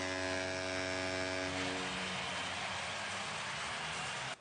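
Arena goal horn blaring steadily over crowd noise after a goal, cutting off about a second and a half in and leaving the crowd's din.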